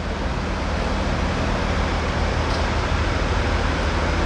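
Construction machinery engine running steadily at idle: a constant low hum under an even hiss, with no change in pitch or level.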